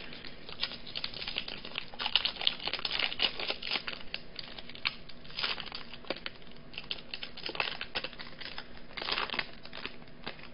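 Foil wrapper of a trading-card pack crinkling and being torn open by hand, a continuous run of sharp crackles.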